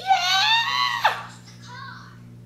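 Baby squealing while playing: one long high-pitched squeal that ends in a sharp drop in pitch about a second in, then a short, fainter squeak.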